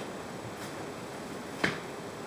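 One short, sharp click about three-quarters of the way through, from green beans being handled at a colander, over a steady low background hiss.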